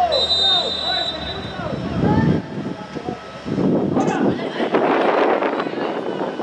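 A referee's whistle blown once, a steady shrill note lasting about a second, signalling the free kick to be taken. Players and spectators shout throughout, louder from about three and a half seconds in as the kick is played.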